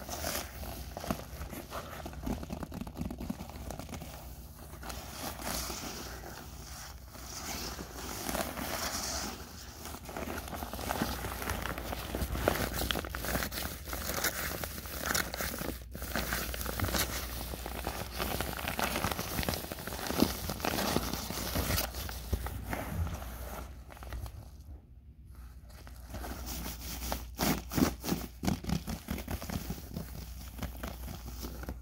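Yellow padded paper mailer crinkling and rustling as it is handled and squeezed up close to the microphone, with a cluster of sharper crackles near the end.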